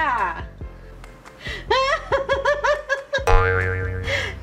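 Comic sound effects laid over the footage: a falling glide right at the start, then a wobbling pitched phrase, then a steady buzzing tone near the end, the kind of cartoon effects used to mark a bad reaction.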